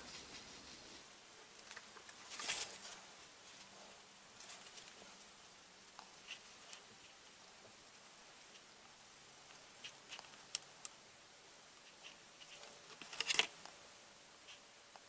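Faint scratching and tapping of a small paintbrush mixing paint on paper, with scattered light ticks and two brief louder rustles, about two seconds in and near the end.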